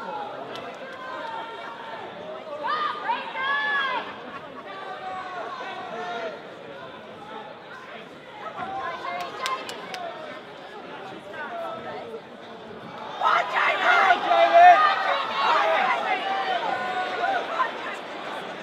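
Boxing crowd: spectators' voices shouting and calling out over one another. About thirteen seconds in they rise to a louder burst of many voices shouting together for a few seconds.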